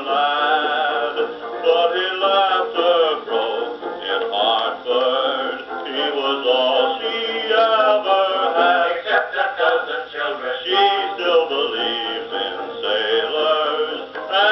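1920s dance orchestra playing a peppy fox trot, heard from a 78 rpm record. The sound is thin, with no deep bass and no high treble.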